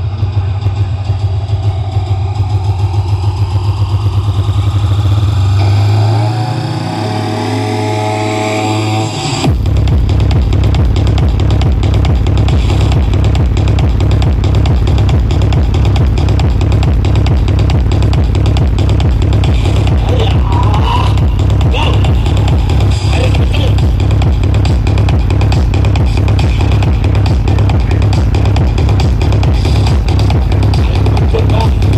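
Electronic dance music played loud through large outdoor sound-system speaker stacks. A build-up with rising sweeps has its bass cut out for a few seconds. About nine seconds in, a heavy, steady bass beat drops back in and carries on.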